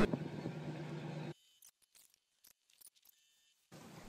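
Vehicle engine and road noise with a steady low hum, cutting off abruptly about a second in; then near silence with a few faint clicks.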